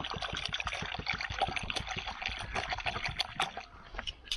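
Water poured from a plastic gallon jug into a shallow plastic bowl: a steady pour into the water already in the bowl that stops near the end.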